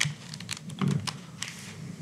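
A few light clicks and taps, irregularly spaced, with a brief low sound a little under a second in.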